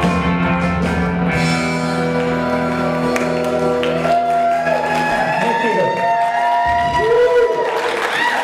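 Live rock band with electric guitars ending a song on a held chord that rings out steadily. About five seconds in, the chord dies away and voices take over.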